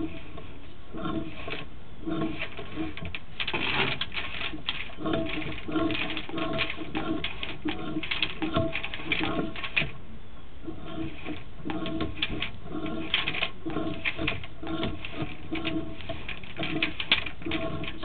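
Sewer inspection camera's push cable being fed down the drain line, with steady irregular clicking, rattling and rubbing, mixed with short recurring low squeaky tones.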